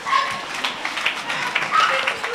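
Short shouted exclamations from human voices, with scattered clicks and knocks in between; the loudest cries come just after the start and again near the end.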